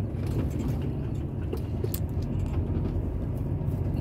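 Truck engine and road noise heard from inside the cab while driving at low speed, a steady low drone.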